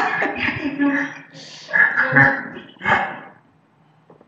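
A man laughing in several bursts that die away about three and a half seconds in.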